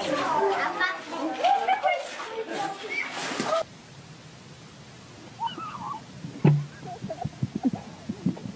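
Children's excited voices and squeals, loud and busy for the first three and a half seconds, then cut off abruptly. After that it is much quieter, with a single sharp knock about six and a half seconds in and a few fainter knocks near the end.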